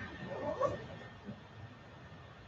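Quiet room tone with a faint, indistinct murmur of a voice in the first half second or so.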